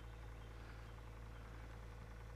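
A faint, steady low hum with a faint higher tone above it, unchanging throughout.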